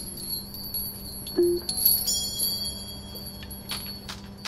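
Chimes ringing out in high, bell-like tones that hang on and slowly fade, with a single short low note about one and a half seconds in.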